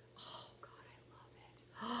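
A woman's faint, breathy whisper about a quarter second in, then near the end a breathy, drawn-out "oh" of delight begins.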